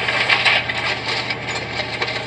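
Heavy truck driving on snow and ice: a steady low engine drone under dense crackling and crunching, strongest in the first half second.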